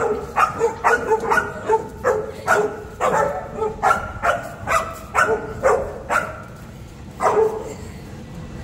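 Young Boerboel (South African Mastiff) barking in quick, repeated high yaps, about two to three a second, with a short pause near the end before one last bark.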